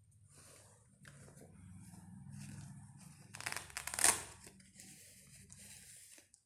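Rustling and crinkling of a bag and packaging being handled, with a louder burst of crinkling about three and a half seconds in.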